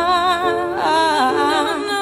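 Pop song: a female voice sings a drawn-out, wavering melodic line with no clear words, over the backing track.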